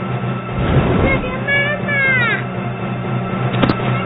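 A young girl crying out and wailing in distress, with high-pitched cries that bend and fall, over a dramatic music score with a steady low drone.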